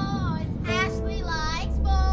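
Boys' voices taunting in a mocking sing-song chant, with long drawn-out notes that slide up and down.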